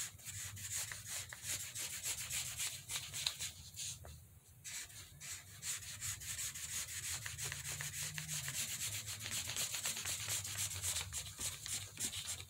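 Green felt-tip marker scribbling rapidly back and forth on paper, colouring in a patch with quick rubbing strokes, with a brief pause about four seconds in.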